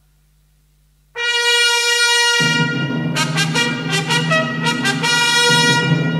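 East German army military brass band: a single held brass note enters about a second in, and the full band with low brass joins a second later and plays on.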